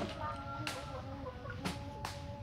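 Hens clucking over the splashing and rubbing of taro corms being washed by hand in a bucket of water, with two short knocks or splashes, one under a second in and one near the end.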